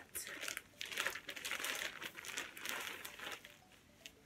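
Clear plastic mailer bag crinkling and rustling as it is opened and clothes are pulled out of it. The crackle dies down near the end.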